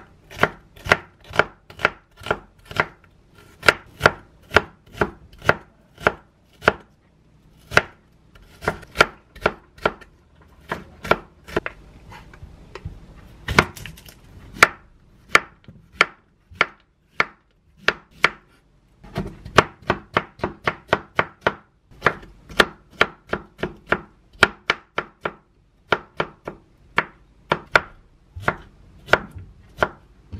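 Kitchen knife chopping on a wooden cutting board, mincing onion and then Korean zucchini: a run of sharp knocks at about two to three strokes a second, with a few brief pauses.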